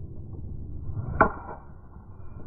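A golf driver's clubhead strikes the ball off the tee with one sharp crack about a second in, followed by a brief ring. A steady low rumble runs underneath.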